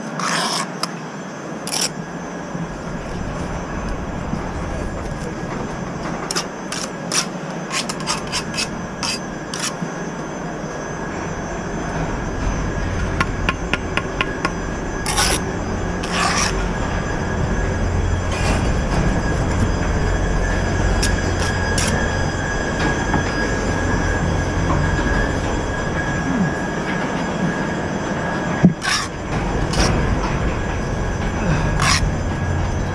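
Steel brick trowel tapping and scraping on bricks and mortar in short, scattered clicks, over a steady low rumble that grows stronger through the second half.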